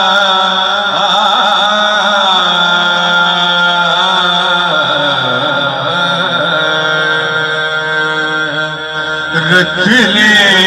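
A male naat reciter singing a devotional naat into a microphone: long held notes with wavering, ornamented pitch. The voice breaks off briefly near the end before coming back strongly.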